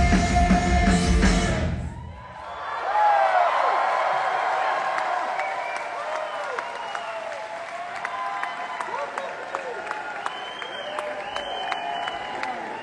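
A live rock band with electric guitar, bass and drums plays the final bars of a song and stops abruptly about two seconds in. A large concert crowd then cheers and whoops, the cheering slowly easing off.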